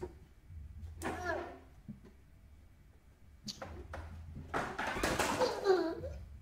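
A young child's voice talking and babbling in two short spells, about a second in and again near the end, over a steady low hum.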